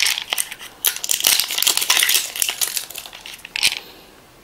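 Thin plastic bag crinkling as it is handled, a dense run of crackly rustles for about three seconds, then one short rustle near the end.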